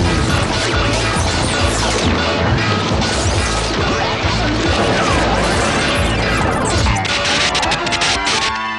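Cartoon crash and electrical-sparking sound effects from a shorting control panel over background music: a dense run of clattering crashes and zaps, with falling whistle-like tones about two to three seconds in and again near the end.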